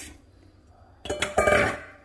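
Raw beef chunks sliding out of a metal mixing bowl into an empty slow-cooker crock, a short clatter lasting under a second that starts about a second in with a couple of knocks.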